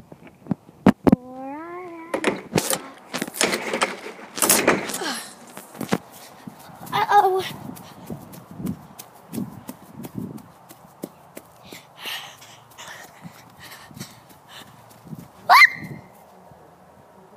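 A phone being carried at a quick pace over grass, with repeated knocks and rustles of handling, and footsteps. A short wavering whine comes about a second in, a brief falling yelp-like call about halfway through, and a quick rising squeak just before the end.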